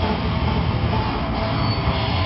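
Heavy metal band playing live: distorted electric guitars, bass and drums in a dense, steady wall of sound.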